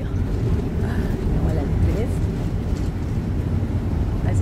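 Steady low engine and road rumble inside a moving tour bus.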